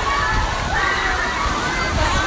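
Water splashing and pouring off a water-park slide tower into a pool, under the chatter and shouts of a crowd of people.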